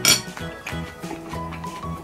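A single sharp clink of chopsticks against a ceramic bowl right at the start, over background music.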